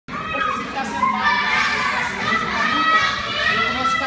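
Several children's voices chattering and calling out over one another, steady throughout.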